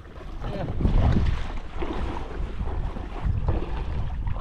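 Wind buffeting the microphone, loudest about a second in, over water lapping and splashing around a kayak hull being towed through shallow water.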